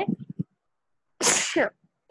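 A single human sneeze a little over a second in: a short sharp hiss that drops into a falling voiced sound. The last syllables of speech fade out just before it.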